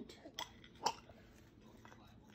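Two short, sharp crackles about half a second apart over faint room noise: handling noise as hands work the food on the plate and the phone is moved.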